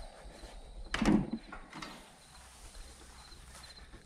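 Wooden garden gate with a metal slide-bolt latch knocking once about a second in.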